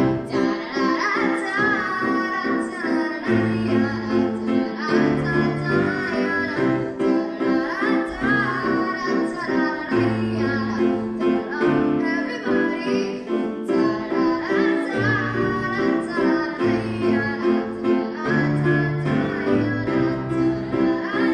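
A young singer's voice through a microphone, accompanied by a grand piano playing repeated chords with a bass line underneath.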